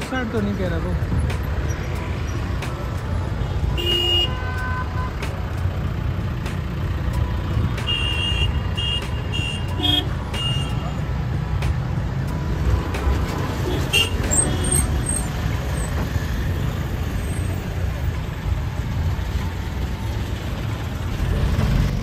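Steady low rumble of a car's engine and tyres heard from inside the cabin in slow traffic, with other vehicles' horns sounding: a short honk about four seconds in, a series of quick beeps around eight to ten seconds, and another short honk near fourteen seconds.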